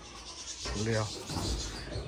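Rubbing and scraping as things, likely the wooden stool, are shifted about while being searched for, with a brief faint voice about a second in.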